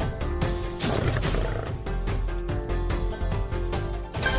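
Video slot game soundtrack: looping music with repeated sharp clicks of the reels spinning and stopping, and a tiger roar sound effect as tiger wild symbols land.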